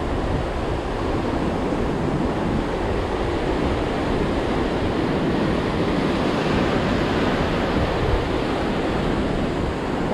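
Ocean surf breaking and washing over a rocky shore: a steady rush of water that keeps an even level throughout.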